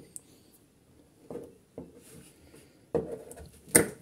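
Hand tools and a nylon recoil-starter rope being handled on a workbench: a few faint light clicks, then a sharp snip near the end as cutters cut through the rope.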